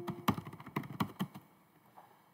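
Typing on a computer keyboard: a quick run of key clicks that stops about a second and a half in.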